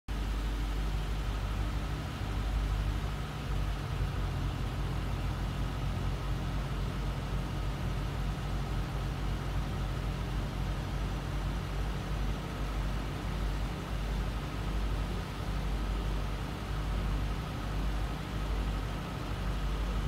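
Late 30-series Toyota Celsior's 4.3-litre V8 idling steadily, its sound sitting low.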